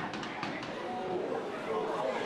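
Football ground ambience: a steady background hiss with faint distant voices from players and crowd.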